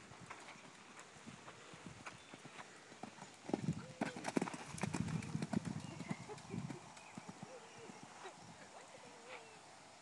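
Hoofbeats of a cantering horse on sand arena footing, a string of dull thuds that grows loudest about halfway through as the horse passes close by.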